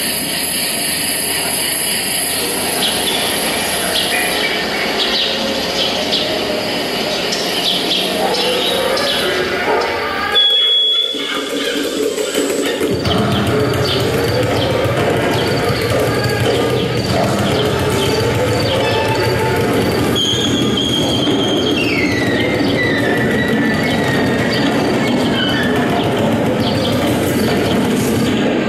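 Contemporary concert music for bass clarinet and accordion in dense, noisy sustained textures. A short high whistling tone comes about ten seconds in, then a low drone sets in under slowly gliding pitches, and a high tone falls in steps near the end.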